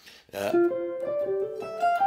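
Electric guitar playing a short single-note improvised line: after a brief pause, a quick run of notes that climbs mostly upward and ends on a held higher note.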